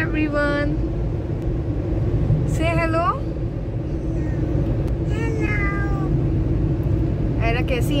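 Steady low rumble of a car cabin on the move, with several short, high-pitched vocal calls from a young child that glide up and down in pitch.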